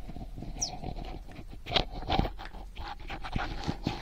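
A small white dog panting close to the microphone, in short, irregular breaths.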